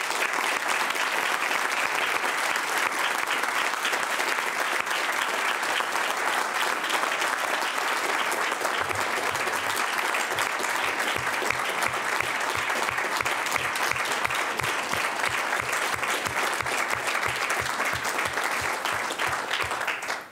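An audience applauding steadily for about twenty seconds, stopping near the end. From about halfway in, one person clapping close to the microphone adds about three claps a second.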